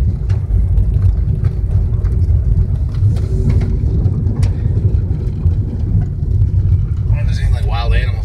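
Car driving on a dirt gravel road, heard from inside the cabin: a steady low rumble of tyres and engine, with occasional faint clicks.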